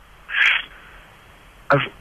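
A pause in a man's speech with low background. About half a second in comes one short hiss-like noise, and near the end he starts speaking again.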